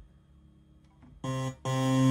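Two low notes played on an electronic keyboard: a short one just over a second in, then a held one near the end. They are C and the black key just above it, C sharp, played one after the other to compare them.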